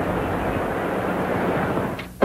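Steady aircraft engine noise, dropping away at the very end.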